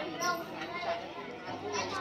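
Background voices of people talking in a street, children's voices among them, with no one close speaker standing out.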